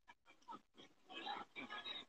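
Faint, indistinct human voices, mostly in the second half.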